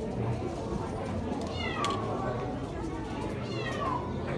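A cat meowing twice, each call short and falling in pitch, over a background murmur of voices.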